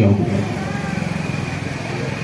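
An engine running steadily, with a rapid even pulsing in its low rumble.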